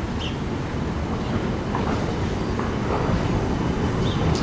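Hess Swisstrolley 5 articulated electric trolleybus approaching over cobblestones: a low rumble that grows steadily louder as it nears.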